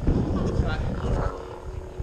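Combat lightsabers' sound boards humming steadily, with swing sounds as the blades are swung in a duel; a sudden loud sound at the start.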